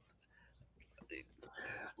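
Mostly quiet, with faint breathy whispered voice sounds about a second in and again near the end.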